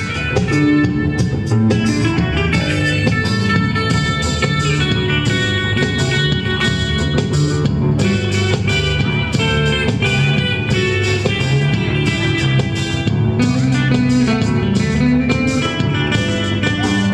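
Live instrumental band music: electric guitar playing the melody over a steady rhythm backing.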